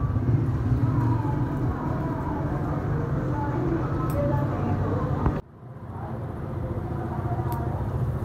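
A steady low mechanical hum with indistinct background voices, and a couple of sharp scissor snips about four seconds in and near the end. The whole sound drops out abruptly for a moment about five and a half seconds in.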